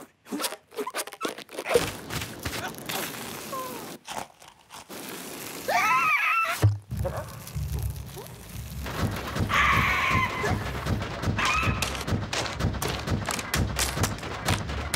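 Cartoon sound effects: scattered clicks and knocks, then a cartoon bird character's wordless squawking cries, about six seconds in and twice more later. A steady low rumble of rapid thumps runs under the second half.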